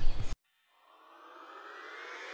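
Sound cuts off abruptly, and after about half a second of silence an edited-in rising whoosh begins, a swell that climbs steadily in pitch and grows louder, typical of a transition riser into music.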